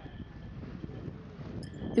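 Faint steady background noise with a thin, constant high hum; no distinct sound event.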